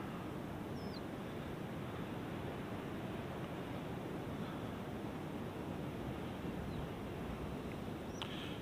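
Steady outdoor ambient noise with a few faint, short bird chirps scattered through it.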